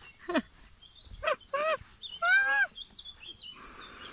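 A woman's short, startled yelps, three quick falling cries, then a longer high-pitched squeal about two seconds in, as a hornet flies at her. Faint bird chirps sound behind.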